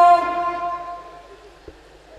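A man's amplified singing voice holding a long note into a microphone, cut off just after the start, its echo dying away over about a second; then low background noise with one faint click.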